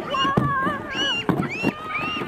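Children's high-pitched squeals and shrieks, several voices overlapping, while sledding in the snow.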